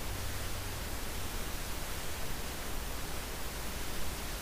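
Steady hiss of recording noise with a low hum beneath it, and nothing else sounding: the microphone's background noise.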